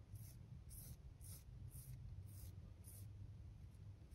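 Faint, rhythmic swishes of fingertips rubbing synthetic Ice Dub dubbing onto fly-tying thread, twisting it into a dubbing noodle, about two strokes a second.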